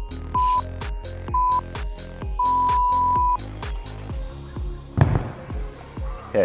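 Electronic background music with a steady beat. Over it a timer beeps twice briefly, a second apart, then once long for about a second, the countdown that ends a work interval. The music then stops, and a single loud thump comes about five seconds in.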